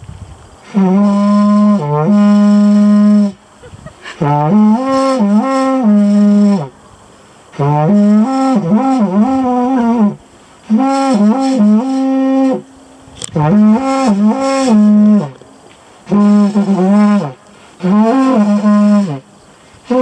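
Carnyx, the Celtic war horn, blown in about seven loud blasts of one to two and a half seconds each. The low note bends and wavers up and down within each blast.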